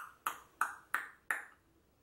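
A quick run of five short, sharp pings, evenly spaced about three a second, each dying away briefly.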